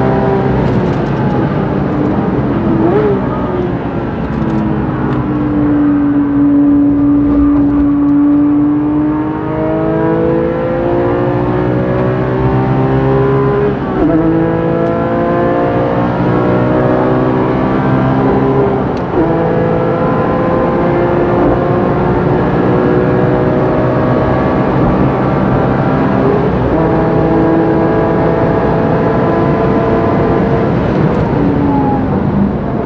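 Modified Porsche 997 GT3 RS Mk2's naturally aspirated 3.8-litre flat-six, heard from inside the cabin under hard acceleration on track. Its note climbs in pitch through the gears, with quick upshifts about 14 and 19 seconds in.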